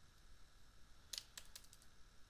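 Faint computer keyboard keys tapped in a quick run of about five or six clicks, a little over a second in: the period and comma keys being pressed to step a paused video frame by frame.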